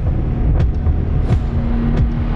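Deep rumbling sound design of a TV programme's animated title sting, with a couple of sharp whooshing hits over it.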